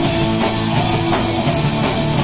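Rock band playing live, with electric guitars and a drum kit, loud and steady.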